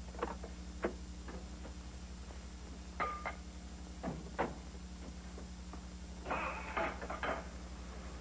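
Car doors being opened and shut: a string of clicks and knocks, with a brief squeak about three seconds in and a closer cluster of knocks near the end, over a steady low hum.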